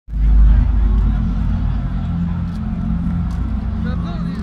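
A deep, steady low rumble played through a large festival PA sound system, with crowd voices faint above it.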